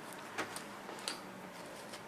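Hands handling denim jeans: a few faint short ticks and rustles, the clearest about half a second in and another about a second in.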